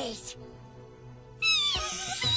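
A Pokémon's high, meow-like cry. One falling cry trails off at the start, and a little before the end a loud new cry begins that wavers up and down in pitch, over background music.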